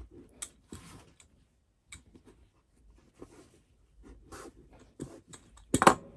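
Hand seam roller rolling over a folded fabric hem on a cutting mat, with fabric rustling and scattered light clicks as the fold is pressed flat instead of ironed. A louder knock near the end as the roller is set down on the mat.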